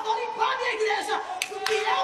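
A voice speaking or calling out, with two sharp hand claps about a second and a half in.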